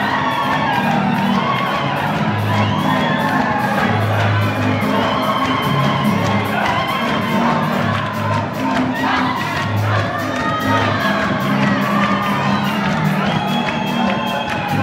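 Live band music with a bass line and electric guitar, led by singers on microphones, under a crowd cheering along.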